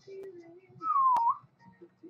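A person whistling one short note of about half a second, gliding down in pitch and turning up at the end, with a single sharp click partway through it.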